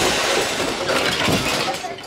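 A whipped-cream pie on a paper plate smashed into a woman's face, heard as a loud, steady rushing noise for nearly two seconds, thinning into her laughter near the end.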